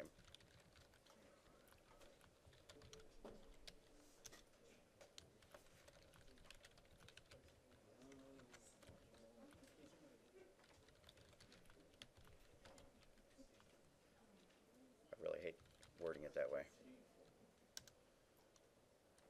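Faint computer keyboard typing: scattered, irregular key clicks as a line of code is typed. A short voice sound is heard twice, about fifteen and sixteen seconds in.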